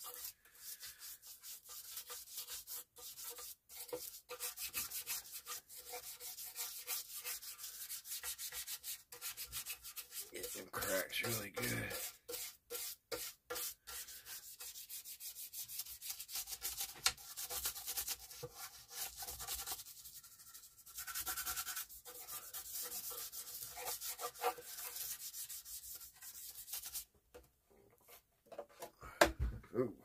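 Quick, repeated scrubbing strokes on the cabinet of a 1940s Motorola table radio as it is cleaned by hand with cleaner. The scrubbing comes in runs with short pauses and stops a few seconds before the end.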